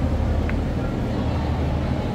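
A steady low rumble with a brief high chirp about half a second in.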